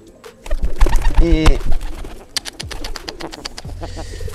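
Domestic pigeon cooing with a rolling 'grok-grok' call about a second in, over a loud low rumble on the microphone. Near the end comes a run of quick wing flaps.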